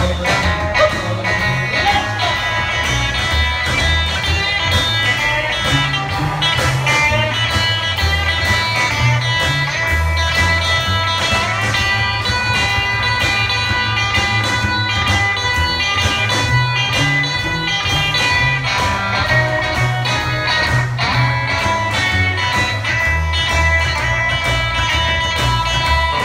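Live rockabilly band playing an instrumental stretch of the song: electric guitar lead over a walking upright bass line, strummed acoustic guitar and a snare drum keeping a steady beat.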